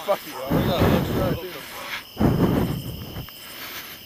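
Loud voices over a steady high chirring of night insects, likely crickets, running under the talk throughout.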